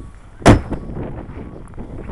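The hood of a 2005 Buick LeSabre slammed shut: one loud bang about half a second in, with a brief ringing after it.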